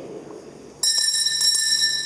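Altar bell struck about a second in, its clear ringing tone holding with several high overtones and slowly fading. It marks the elevation of the chalice at the consecration.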